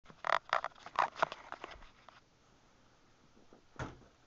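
Handling noise of the recording camera as it is set in place: a quick run of rustles and knocks over the first two seconds, then one louder knock near the end.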